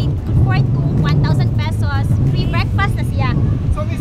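A woman talking over a steady low rumble of wind buffeting the microphone.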